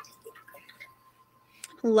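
Heavy cream poured from a carton into a blender jar: a sharp tap at the start, then a few faint, irregular splashes through the first second.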